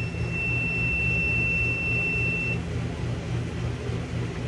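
A Klein Tools CL390 clamp meter's continuity beeper sounds a steady high tone while its probes show a closed circuit through the transmission control module's normally closed pressure switch. The tone cuts off about two and a half seconds in as the switch is pressed down and opens the circuit, showing the switch works. A low pulsing hum runs underneath.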